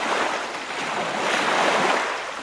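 River water rushing and splashing over rocks at a small riffle close by, a steady loud rush that swells a little in the second half.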